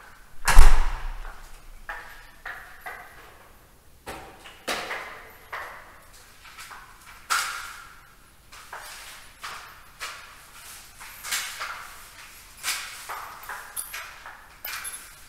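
Household knocks and scrapes while a floor is being washed: a heavy thump about half a second in, then a run of lighter irregular knocks, bumps and short swishes.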